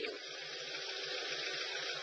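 Steady background hiss with no distinct event, in a short pause between speech.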